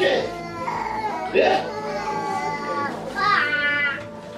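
A young child crying: drawn-out high-pitched wails, one rising sharply about three seconds in.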